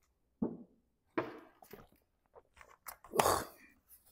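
A man gulping water from a plastic gallon jug: a few separate swallows about a second apart, then a louder rustling burst near the end as the jug comes away.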